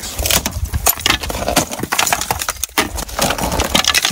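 Old dry wooden lath strips being pulled and pried off a log cabin wall by hand, with a dense run of sharp cracks, snaps and rattles of splintering wood over a steady low rumble.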